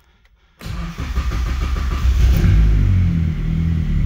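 Mazda Miata inline-four engine cold-starting: a short burst of cranking about half a second in, catching at once and settling into a steady fast cold idle. It starts fairly decently when cold.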